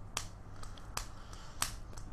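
Three sharp, short clicks, roughly two thirds of a second apart, over a faint low background.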